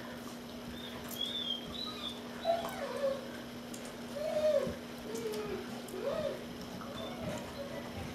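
Puppy whining softly in several short whimpers that rise and fall in pitch, spread over several seconds, over a steady low hum.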